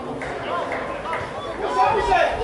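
Children shouting and calling out during a football game, louder near the end.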